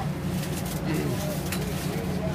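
Wind rumbling steadily on the microphone, a dense low buffeting with a couple of sharp clicks.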